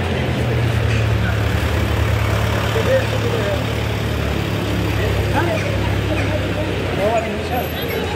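Busy street ambience: the low steady hum of car engines creeping along in traffic close by, with passers-by talking.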